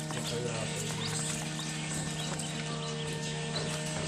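A crowd of newly hatched Pekin ducklings peeping, many short high calls overlapping, over a steady machine hum.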